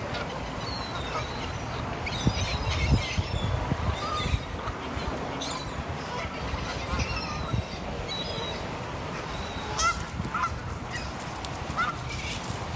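A flock of Canada geese honking, scattered calls throughout, with a few short rising calls near the end.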